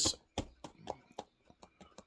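Faint, irregular wet mouth clicks and lip smacks from a man eating, about eight in two seconds.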